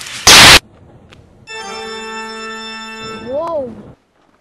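A sudden, very loud burst of harsh, distorted noise lasting about a third of a second, then a held electronic organ-like tone for nearly two seconds. It ends in a short pitched sound that rises and falls.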